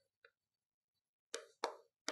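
Chalk tapping on a blackboard while writing: two short clicks about a third of a second apart near the end, against near silence.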